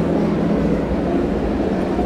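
A man's low, drawn-out voice intoning into a microphone: a held tone that breaks off under a second in, then quieter, shifting vocal sounds.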